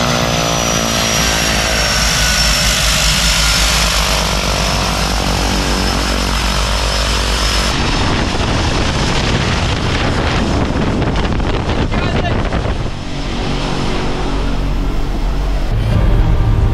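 Twin-engine turboprop plane running on the ground with its propellers turning. A steady high turbine whine sits over the propeller drone, and their pitch drifts over the first few seconds. The sound changes character about halfway through.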